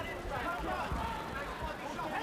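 Speech, most likely broadcast commentary, over the steady background noise of an arena crowd.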